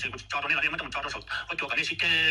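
Speech: a person talking steadily.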